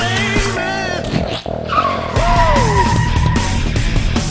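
Car tyres squealing for about a second as the car slides across pavement, over loud hard rock music.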